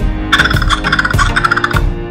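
Background music with a steady beat and a repeating warbling melody.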